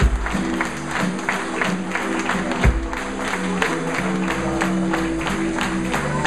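Blues band rhythm section vamping: a steady drum beat with sharp cymbal or snare strokes about four a second under sustained electric bass notes.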